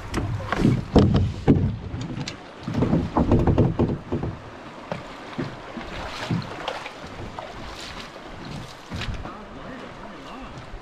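Water splashing in rocky shallows and hollow knocks on a canoe hull as a paddler wades beside the canoe and handles the paddles. The loudest splashing and knocking comes in the first four seconds, with softer, scattered knocks after.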